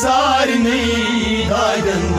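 A singer's voice holds and bends a long, ornamented phrase of a Kashmiri Sufi song in a chant-like style, over steady low accompaniment.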